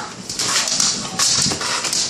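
A pit bull tugging hard on a broom head in its jaws, making dog noises over an irregular rustling and scuffing.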